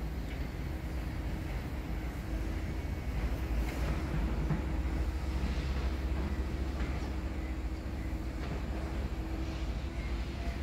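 Steady low rumble of outdoor background noise with a faint constant hum, swelling slightly in the middle.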